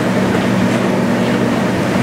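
Steady low hum with an even hiss: the room tone of a meeting room's sound system during a pause in talk.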